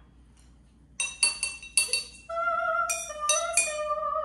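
A chopstick tapping a row of drinking glasses tuned with water, each tap giving a clear ringing note. After a short pause comes a quick run of about six taps, then slower taps whose notes ring on, changing pitch from glass to glass.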